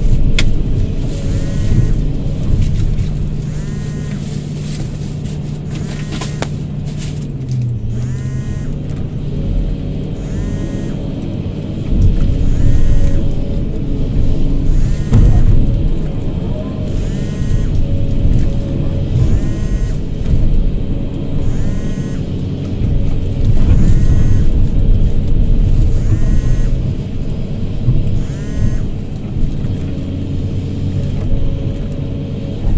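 Hydraulic excavator's diesel engine running under digging load, its pitch dipping briefly about eight seconds in, with background music with a regular repeating pattern playing over it.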